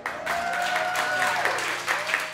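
Small audience applauding with dense clapping as a solo piano song ends, one voice holding a long call over the clapping for about a second.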